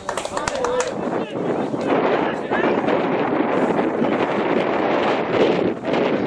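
Wind buffeting the camera microphone, with indistinct shouts from players on the pitch mixed in.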